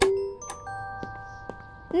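Cartoon aeroplane seat call button pressed: a short beep, then a chime whose steady tones ring on and fade over about a second and a half.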